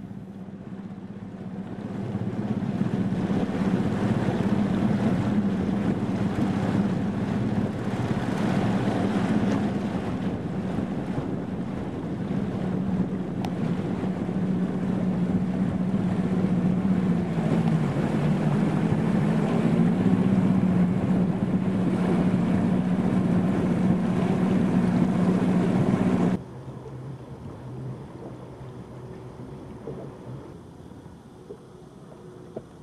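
Outboard motor on a bass boat running at speed, a steady engine hum mixed with wind on the microphone and rushing water. Its pitch sags briefly and comes back up a little past the middle. Near the end the sound cuts off suddenly to a quieter, lower engine hum.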